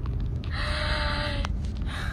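Steady low rumble inside a car's cabin in slow traffic, with a breathy vocal sound from a person lasting about a second midway, cut off by a short click.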